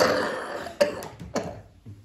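An elderly man coughing and clearing his throat: one long, rough cough at the start, then two or three shorter, sharper coughs, each fainter than the last.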